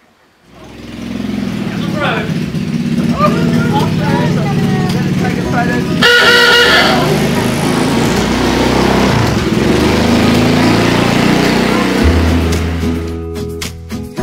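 Small engine of a custom rat-rod golf cart running steadily. People talk over it, and there is a brief loud pitched sound about six seconds in.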